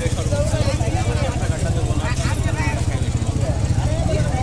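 A small engine idling steadily, an even low pulsing rumble, with voices talking underneath.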